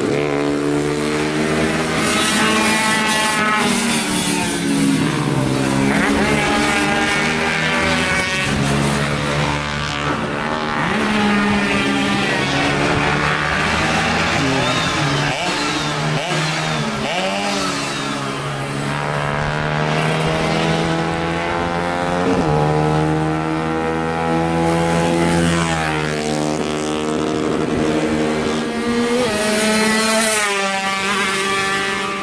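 Two-stroke Yamaha F1ZR race motorcycles revving hard around the track. The engine pitch climbs through each gear and drops at every shift, over and over.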